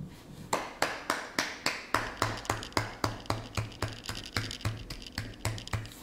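A person clapping her hands steadily, about three claps a second, with a low thud joining each clap from about two seconds in.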